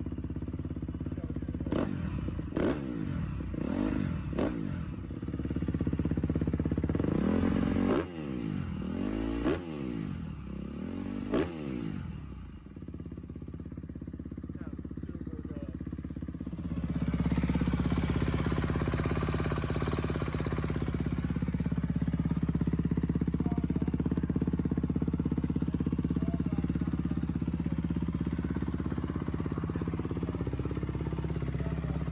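2013 Honda CRF250R single-cylinder four-stroke dirt bike engine idling on a stand through a single aftermarket silencer, blipped about five times in quick rises and falls of revs, then settling to idle. A little past halfway the sound switches abruptly to the bike running on its stock twin mufflers, idling steadily and louder.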